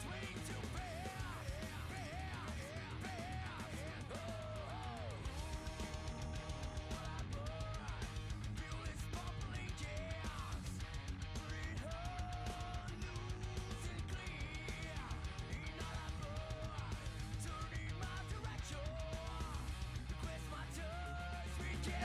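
Background music led by an electric guitar, with a lead line of bending, wavering notes over a steady beat and sustained bass.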